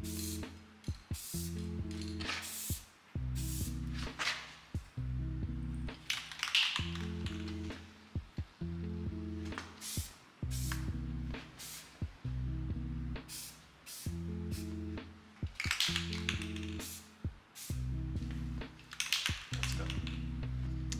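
Background music with a repeating pattern of low chords, over irregular short hisses of an aerosol spray-paint can, with a few longer sprays in the middle and near the end.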